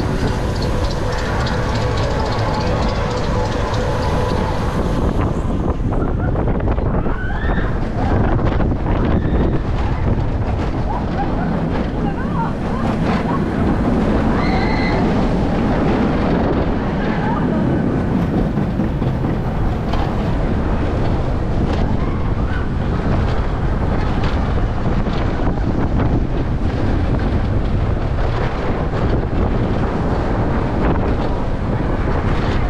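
Wind rushing over the microphone on a Vekoma suspended family coaster train in motion, with the train's wheels running along the steel track underneath, loud and steady throughout.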